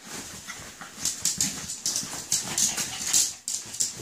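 Yorkshire Terrier pawing and scratching at a fabric dog bed: a quick run of scratchy rustles, several a second.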